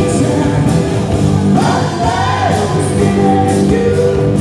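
A live rock band playing, with a man singing the lead vocal over drum kit and bass guitar.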